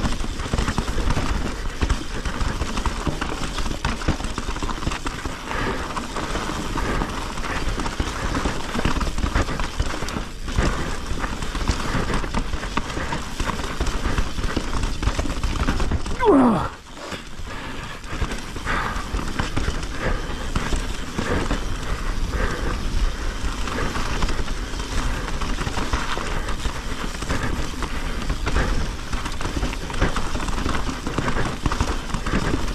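Mountain bike rolling fast down rocky singletrack: the tyres crunch over dirt and stones and the bike rattles, with steady wind rumble on the microphone. About halfway through there is a brief falling squeal, then a moment's drop in the noise.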